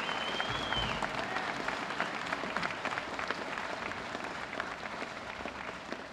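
Audience applauding, the clapping slowly dying away. A thin high tone sounds briefly during the first second.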